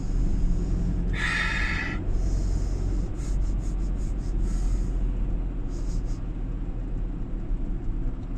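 Ford Transit 2.4 TDCi diesel van driving in town, its engine and road noise a steady low rumble inside the cab. About a second in, a breath is drawn sharply in through the nose.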